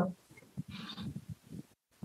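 A pause in speech over a video call: only faint, brief sounds, with a soft hiss a little under a second in, then a moment of dead silence before speech resumes.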